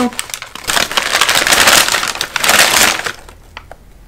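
Crumpled brown kraft packing paper crackling and rustling as it is pulled out of a cardboard box, for about three seconds before stopping, with a few small clicks after.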